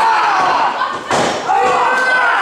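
One sharp smack of an impact in the wrestling ring about a second in, over voices shouting.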